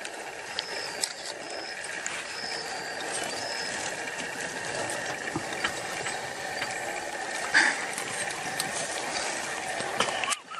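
A porcupine rattling its quills: a dense, continuous dry clatter of many small clicks, its warning display against a predator close by.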